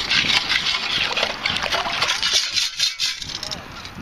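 Water sloshing and pebbles and shells rattling against a perforated metal sand scoop as it digs and is lifted through the water, with many small sharp clicks.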